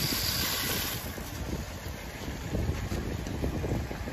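Garden hose spraying water onto a car's alloy wheel and tyre, a steady hiss that stops about a second in. Low wind rumble on the microphone fills the rest.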